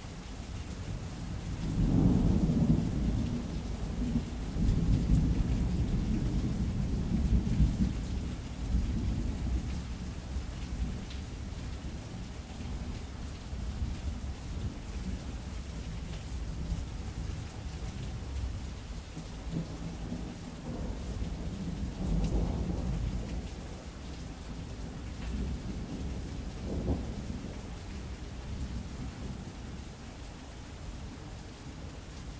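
Steady rain with a long, low rumble of thunder swelling in near the start and rolling on for several seconds, then two fainter rumbles later on.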